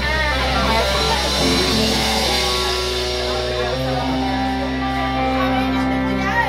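Live rock band's electric guitars and bass holding long, ringing chords in the song's closing outro, with no singing.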